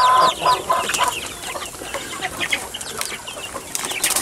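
A pen of young chickens calling: a drawn-out call ends just after the start and a few short calls follow within the first second, over many small high peeps from the rest of the flock.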